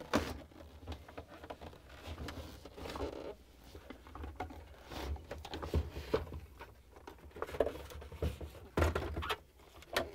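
Scattered light clicks, knocks and scraping of plastic parts as a refrigerator's plastic ice maker assembly is worked loose by hand and pulled out of its compartment, with a louder knock near the end.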